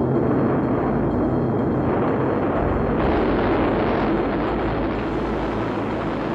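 Atlas rocket engines firing at liftoff: a loud, steady rushing roar that grows fuller and deeper about halfway through.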